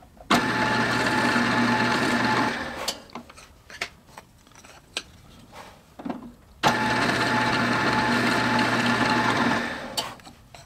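Benchtop drill press running twice, about two to three seconds each time, with a steady motor hum as a quarter-inch Forstner bit bores shallow countersinks for rivet heads in thin walnut strips. Light clicks and knocks are heard between the two runs.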